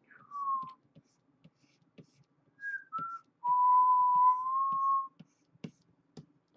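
A person whistling a few notes: a falling note, two short notes, then one long held note that rises a little near its end. Faint clicks from computer mouse or keyboard work sound underneath.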